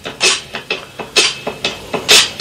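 A bare percussion beat played for rapping over: sharp, crisp hits about twice a second, the strongest about once a second, with almost no bass.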